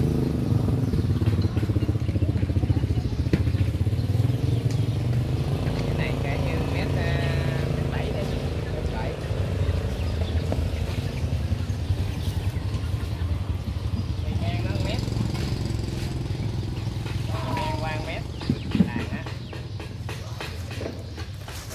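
A small engine running steadily with a low drone, slowly fading over the stretch, with one short sharp knock near the end.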